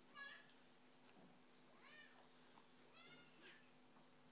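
Near silence: room tone with a steady low hum, and three faint, short, high-pitched squeaks or cries that rise and fall in pitch, about a second apart.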